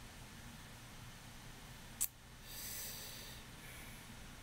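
Faint steady low hum, a single sharp click about two seconds in, then a short breath out through the nose close to the microphone, lasting about a second.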